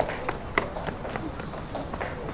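Footsteps of several people walking on stone paving, with high heels clicking in an uneven patter of several steps a second.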